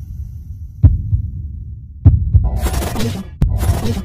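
Intro sound effects: a deep bass drone with heavy low thumps about a second in and again two seconds in, then loud bursts of glitchy static in the second half, cut by a sharp click.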